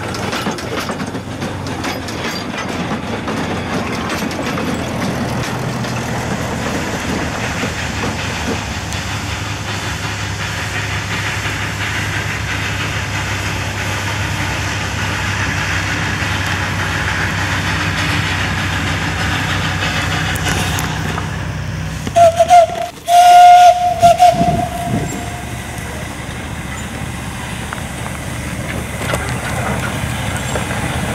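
Narrow-gauge forest railway train running, with a steady low engine hum from a small diesel locomotive passing. About 22 seconds in, a train whistle gives two loud blasts, a short one and then a longer one.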